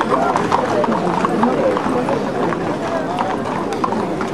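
Hooves of a column of Camargue horses clip-clopping at a walk on a paved street, many short knocks overlapping, under the steady chatter of many people talking at once.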